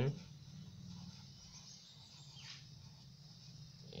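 Felt-tip marker writing on paper, with faint squeaks and scratches of the tip, over a steady low hum.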